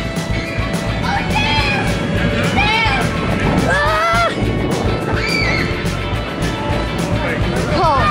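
Children squealing in several separate high, arching cries over steady background music.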